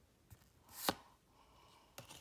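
A trading card being slid off the front of a hand-held stack: one short, sharp flick about a second in, with a fainter tick before it and another at the end.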